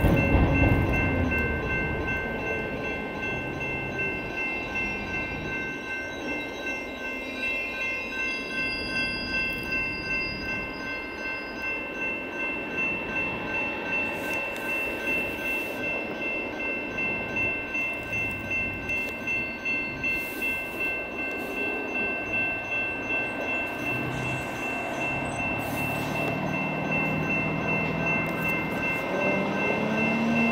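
Railroad crossing electronic bells (GS Type 2 E-Bell) ringing throughout the crossing's activation, a repeating electronic ding at a steady pitch. A vehicle goes by loudly at the start.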